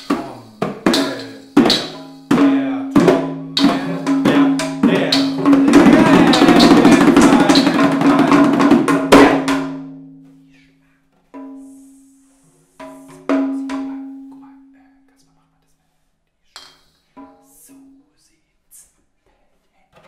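Frame drums struck by hand, with a child's toy drum kit hit with sticks: separate beats at first, then a fast roll of drumming for about four seconds, the loudest part. After it, a few single strokes each leave a low drum tone ringing away, and a few light taps come near the end.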